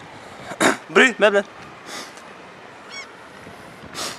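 A man shouting 'Bry!' once about half a second in, followed near the end by a brief faint high chirp.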